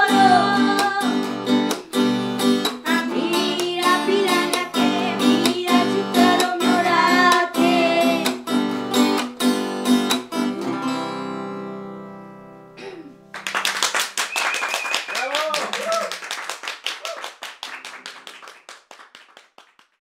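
Nylon-string acoustic guitar strummed under a girl's singing voice in a Romani song, ending on a final chord that rings out and fades about ten seconds in. After a short pause comes a run of clapping with voices, dying away toward the end.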